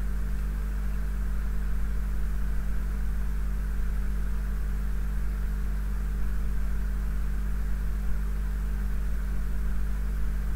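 Steady low electrical hum with an even hiss, constant throughout, with no distinct events.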